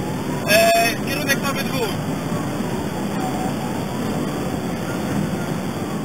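Loud, steady road and engine noise inside a police patrol car driving at high speed, with a siren wailing faintly underneath.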